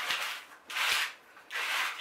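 Small finger-pump spray bottle squirting three times, one short hiss about every three-quarters of a second.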